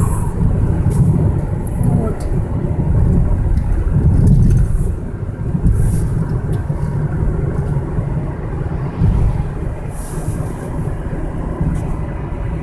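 A car driving along a road, heard from inside the cabin: a steady low rumble of tyres and engine.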